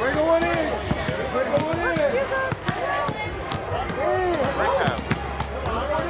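Basketball being played: a ball bouncing with sharp knocks on the court, under several voices calling and shouting over one another.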